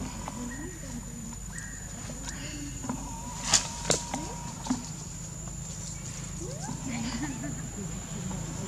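Outdoor ambience with faint voices talking in the background and a steady high-pitched whine, broken a little after the middle by three sharp knocks, the loudest sounds here.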